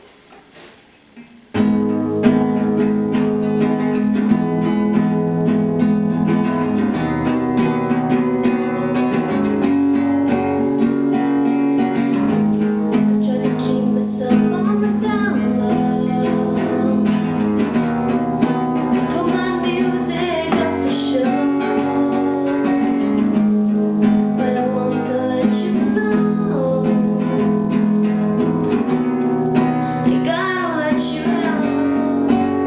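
Acoustic guitar strummed in steady chords, starting about a second and a half in, with the echo of a small tiled bathroom.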